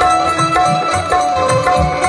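Devotional bhajan music: held, sustained melody notes over a steady pattern of low hand-drum strokes.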